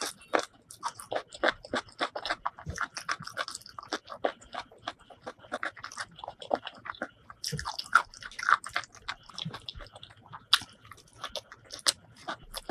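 Close-miked chewing and biting: an uneven run of short, sharp crunches and clicks as a mouthful of food is chewed, including bites into a raw green vegetable.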